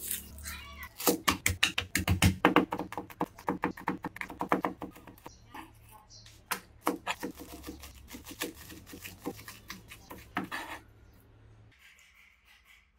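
A kitchen knife chopping garlic cloves on a cutting board: quick runs of sharp taps, fastest in the first few seconds, then sparser. Before the chopping there is a short rustle of papery garlic skin being peeled.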